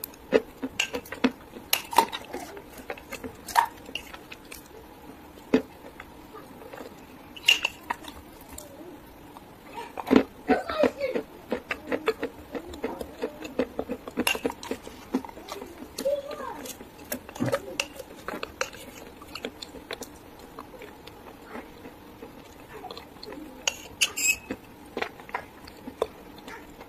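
A metal spoon clinking and scraping against a drinking glass, mixed with crunchy chewing of a crumbly food; irregular sharp clicks and taps, thickest about ten seconds in and again around fifteen seconds.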